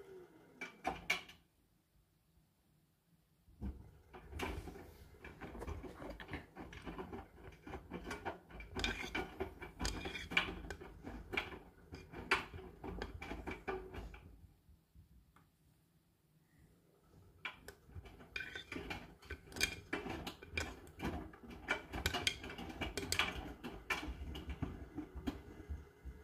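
Hotpoint NSWR843C washing machine drum turning the load in two stretches of about ten seconds, separated by short pauses. Each stretch is a low motor hum with rapid clicking and clattering as the laundry tumbles against the drum.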